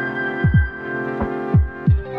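Background electronic music: sustained synth chords over deep kick-drum hits that drop in pitch, landing about half a second in, about a second and a half in, and again near the end.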